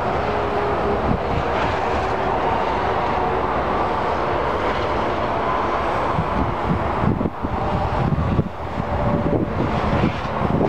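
Steady vehicle noise, becoming more uneven in the last few seconds.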